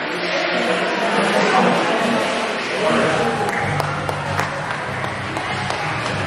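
Busy crowd chatter in a roller coaster loading station, with background music and a low steady hum joining about halfway through.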